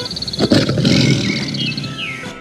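A tiger roars once, starting sharply about half a second in and trailing off over about a second.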